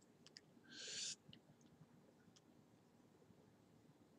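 Near silence: room tone, with a short soft hiss about a second in and a few faint clicks.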